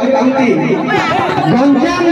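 Speech only: men talking into a stage microphone, with voices overlapping at times.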